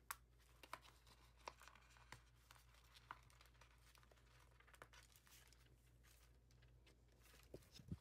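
Near silence: a few faint scattered ticks and crinkles of a clear sticker sheet being handled and a sticker being picked off its backing with a pointed tool, over a low steady hum.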